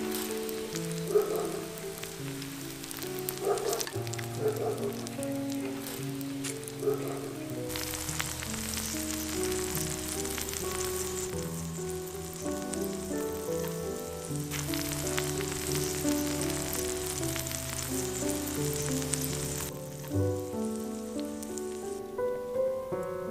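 Meat, water bamboo shoots and mushrooms sizzling on a hot stone slab, the sizzle fuller from about eight seconds in until shortly before the end, over instrumental background music.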